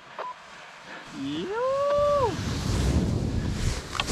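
A person's long hooting 'whooo' call, about a second in, that rises, holds and falls over about a second. After it comes a steady rush of low noise on the microphone.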